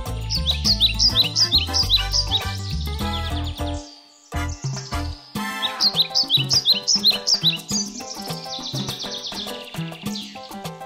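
Upbeat children's background music with a run of short, quick bird-like chirps over it, heard twice; the music drops out briefly about four seconds in.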